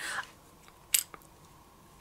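A single sharp plastic click about halfway through, followed by a fainter tick: the clear plastic lid of a brow powder compact snapping shut.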